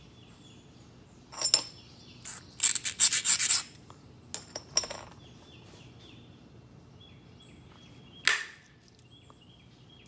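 Flintknapping: a billet striking the edge of a thin stone flake held on a leather pad, giving sharp clicking hits about a second and a half in and around the fifth second, with one last hit near the end. Around the third second comes a quick run of rubbing, scraping strokes on the edge. Faint birds chirp in the background.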